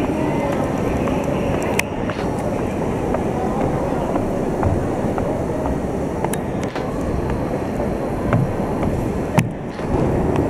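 Busy railway station platform ambience: a steady low rumble from standing trains, with people's voices and a few sharp clicks.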